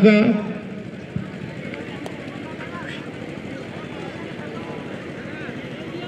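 A man's voice finishes a word over the loudspeaker, then steady outdoor background noise with faint scattered distant voices, typical of the crowd at a football ground. A single sharp knock comes about a second in.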